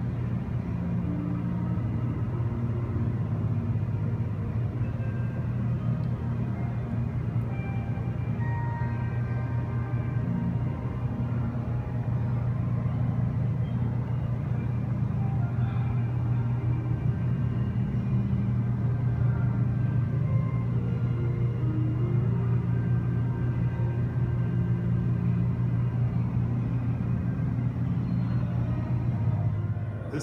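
Soft ambient music of slow held notes over a steady low hum.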